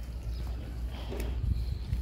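Water buffalo walking on packed dirt, a few soft hoof steps over a steady low rumble.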